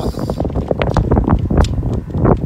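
Wind buffeting a phone's microphone, a loud low rumble, with a few short knocks or rustles through the middle.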